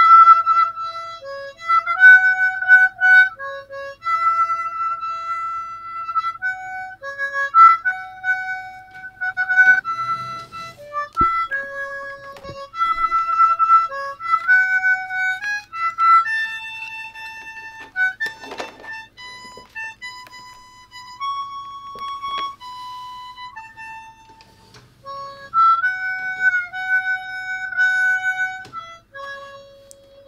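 Harmonica playing a melody of single held notes, one note after another.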